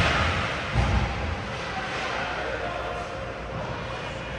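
Ice hockey game sound in an indoor rink: echoing voices of players and spectators, with a sharp thud right at the start and a duller one about a second in.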